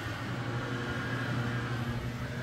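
Steady low machine hum with no change in pitch or level.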